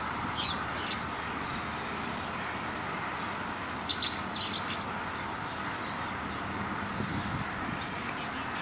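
A small bird chirping in short, high calls: two near the start, a quick run of several about four seconds in, and single ones between, over a steady faint outdoor background.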